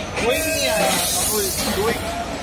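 Passenger train drawing slowly into a station with a loud hiss lasting about a second and a half, over voices on the platform.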